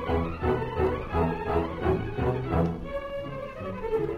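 Orchestral radio music with bowed strings, over a low beat that repeats about three times a second, settling into longer held chords a little before three seconds in.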